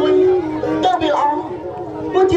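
A lakhon basak performer's voice over a sustained, stepping instrumental melody from the accompanying ensemble.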